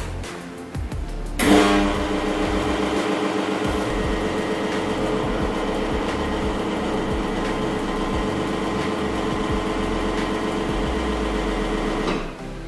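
Teknika single-group espresso machine pulling a shot: its pump starts suddenly about a second and a half in and runs with a steady hum, cutting off at the very end when the shot is stopped.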